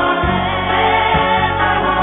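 Background music with a choir singing, held notes layered over one another at a steady level.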